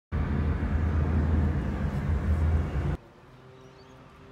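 Road noise of a moving vehicle: a steady low rumble with a hiss above it. It cuts off suddenly about three seconds in, leaving quiet with a faint steady hum.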